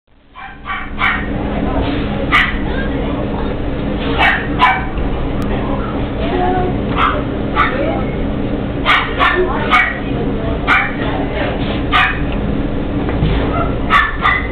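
Puppies yapping and barking in short, sharp bursts, about a dozen times, over a steady low hum.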